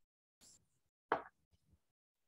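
Mostly quiet, with two brief noises: a soft hiss about half a second in, then a short pop about a second in.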